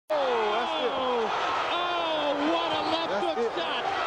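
Raised, excited voices shouting over one another, their pitch high and sliding up and down, as a boxer goes down from a knockout punch.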